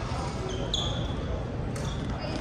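Indoor badminton play: court shoes squeak twice on the court surface about half a second and three quarters of a second in, and a sharp hit, typical of a racket striking the shuttlecock, comes near the end. Chatter and hall noise run underneath.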